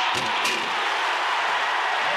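Large arena basketball crowd cheering steadily in reaction to a steal and breakaway, with a couple of short sharp sounds about half a second in.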